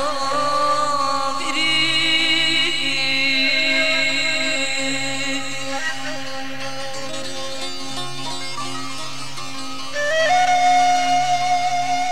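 Zazaki folk song recording: long held melody notes over a low, regularly pulsing accompaniment, with a louder held note coming in near the end.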